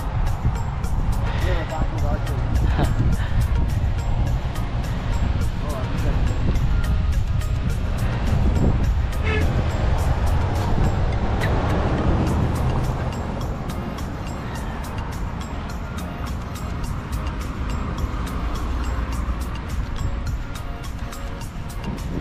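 Wind rumbling on the microphone of a camera riding on a moving bicycle, with cars passing on the road. Music with a steady tick plays over it.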